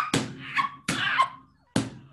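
Women laughing hard, in three sharp, breathy bursts.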